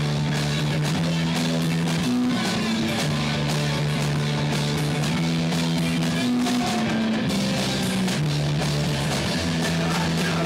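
Punk rock band playing live: electric guitar and bass riffing on held low notes that change pitch every second or so, over a drum kit with steady cymbals.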